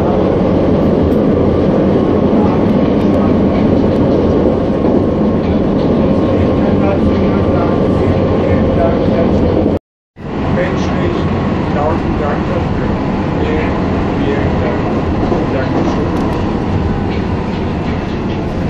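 Steady rumble and hum of a moving vehicle heard from inside. It breaks off for a moment about ten seconds in, then carries on.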